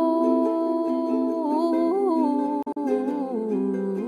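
Slow pop music: a long, wordless held vocal note over soft accompaniment, wavering briefly around the middle, with two momentary dropouts a little past halfway.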